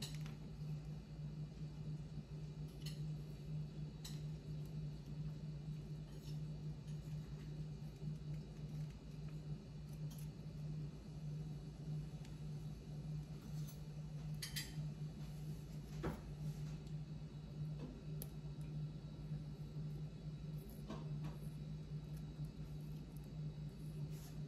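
A steady low hum under a few faint, scattered clicks and taps as a small paring knife slits open dried vanilla bean pods.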